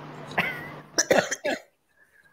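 A woman coughing: a short cough about half a second in, then a few quick coughs about a second in.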